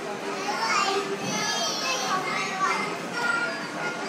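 Children's voices, high-pitched calls and chatter, with music playing underneath.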